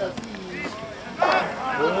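Spectators' voices: low chatter, a short laugh, then a man's long, held "oh" rising in near the end.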